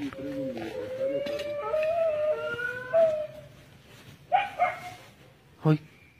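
Dogs howling: a long drawn-out howl of about three seconds, rising slightly in pitch, with a second howl overlapping it, then a shorter call about four seconds in.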